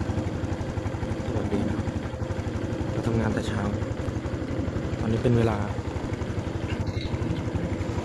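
An engine idling steadily, a fast even low pulsing that runs under a few spoken words.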